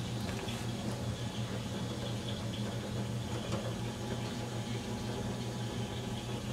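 A steady low hum under even room noise, with a few faint small clicks.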